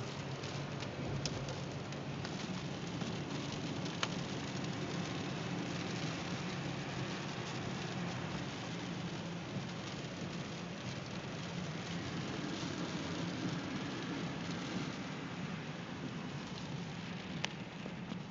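Steady noise inside a moving car's cabin: a low engine and road hum, with tyres on a rain-soaked road and rain on the car. A few faint clicks.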